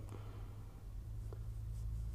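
Quiet room tone with a low steady hum, and faint scratchy rubbing on a touchscreen late on as a red mark is drawn over the answer.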